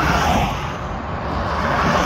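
Cars passing close by on a highway, their tyre and engine noise swelling into a whoosh as one goes past right at the start, then building again near the end as the next ones approach.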